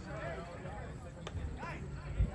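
Indistinct voices of people talking, with no clear words, over a low outdoor background; a brief click about a second in.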